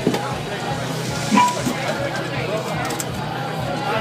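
Indistinct chatter of several people talking, with a sharp knock right at the start and a brief louder sound with a short tone about a second and a half in.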